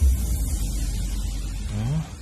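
Dramatic background-music sting: the music drops in pitch into a loud, deep rumble that holds and slowly fades, with a short rising tone near the end.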